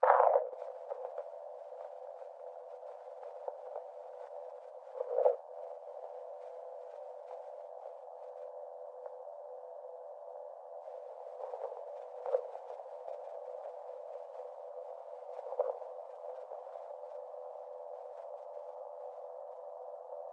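Experimental electronic music: a steady drone of stacked pure electronic tones in the middle range comes in suddenly after silence, with a few brief swells, at about 5, 12 and 15 seconds in.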